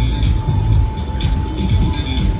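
Loud music from a fairground ride's sound system, over a low rumble.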